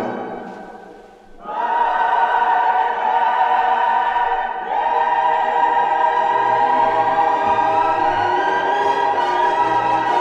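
Orchestral easy-listening music with a choir: one piece fades out over the first second or so and the next begins about a second and a half in, with long held notes.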